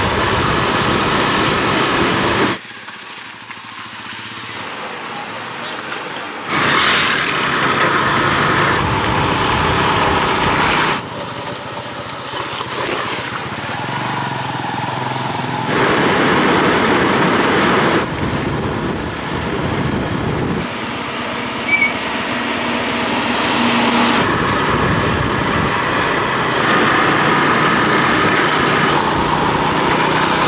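Motorcycle taxi running along a rough dirt road, heard from the pillion seat: steady engine and road noise. It is a run of short clips that cut abruptly from one to the next, with the level jumping up and down at each cut.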